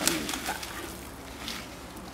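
Whole black peppercorns tipped from a small plastic packet into a pot of hot water: the packet crinkles and a few light clicks sound, in a cluster at the start and once more about a second and a half in.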